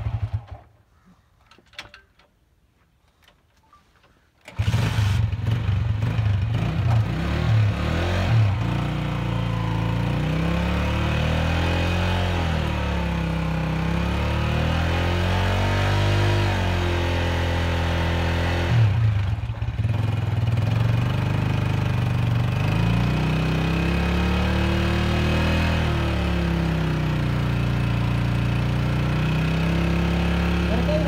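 After about four seconds of near silence, a motorcycle engine revs hard, its pitch rising and falling in slow waves, as its rear wheel drives the flywheel of a 79-year-old Ruston stationary diesel engine to crank it into starting.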